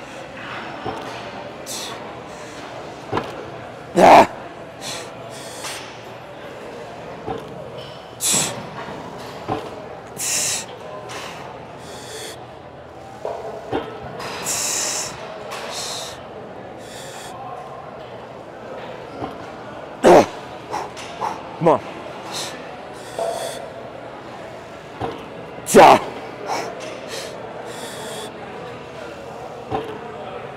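A man doing a heavy set on a hack squat machine: forced breathing with short hissing exhalations and a few loud grunts, about 4, 20 and 26 seconds in, the last the loudest. Gym background noise runs underneath.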